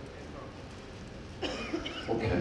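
Low room tone in a hall, then about one and a half seconds in a sudden cough, followed by the start of a man's voice.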